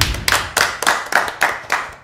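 Two people clapping their hands in steady claps, about three or four a second.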